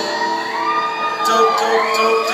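Live music holding a steady chord, with audience members whooping and shouting over it.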